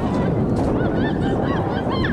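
Wind rumbling on the microphone, with several short, high-pitched calls over it.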